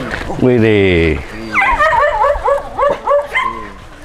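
A pack of shelter dogs crowding at a gate, calling out: one long, lower cry that falls in pitch about half a second in, then a quick run of high yips and whines.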